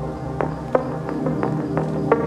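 Organic house music: a sustained drone with sparse plucked notes that come more often near the end.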